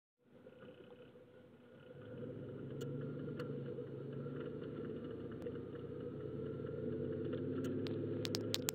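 Car engine and road noise heard from inside the cabin as the car pulls away and drives on, a steady low hum that grows louder about two seconds in. A few faint clicks sound over it.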